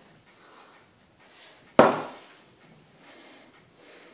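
Soft kitchen handling as flour is tipped from a glass into a mixing bowl of batter, with one sharp knock of kitchenware against the bowl a little under two seconds in.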